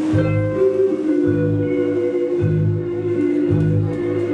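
Live blues band playing an instrumental passage of a slow blues: sustained guitar lines over low bass notes that change about once a second.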